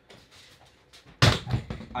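A thrown throw pillow knocking things over: a loud crash about a second in, then a short clatter of smaller knocks as objects fall.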